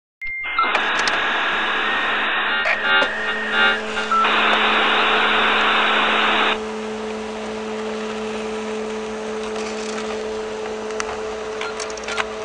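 Dial-up modem handshake: a high answer tone, then shifting warbling tones, then a dense hiss of line training between about 4 and 6.5 seconds in. After it a quieter steady hum with low tones carries on.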